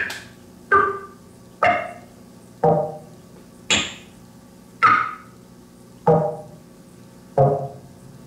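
Synthesizer playing a sparse sequence of percussive electronic notes, about one a second and slowly spreading out. Each note has a sharp attack that rings briefly and dies away, and the pitch changes from note to note.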